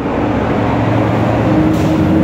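Steady low machine drone, a constant hum that holds one pitch, of the kind an idling engine makes.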